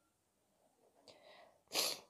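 A person's short, sharp breath, a noisy burst about three quarters of a second long near the end, after near silence and a faint hiss.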